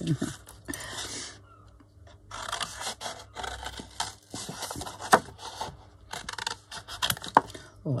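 Hairdressing scissors cutting through a sheet of stamped paper, in several stretches of snipping and paper rustling with a few sharp clicks of the blades.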